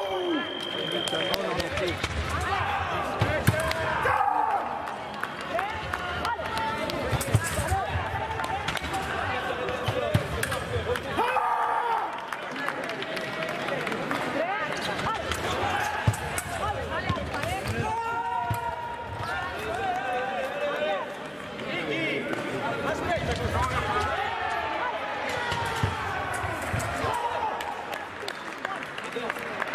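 Indistinct voices in a large fencing hall, with sharp thuds and clicks of fencers' footwork on the piste. A short, steady high beep sounds right at the start.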